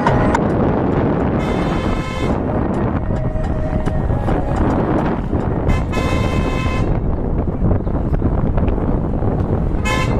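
Vehicle driving on a road with steady road and engine rumble. A horn sounds twice, each honk held about a second, and gives a short toot near the end.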